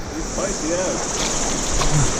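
Steady rush of river water in the shallows, with light splashes from a hooked trout thrashing at the surface as it is brought into a landing net.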